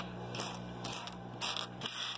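Light handling clicks and rustles of pennies being moved on a wooden tabletop, about four small clicks spread across two seconds, over a steady low hum.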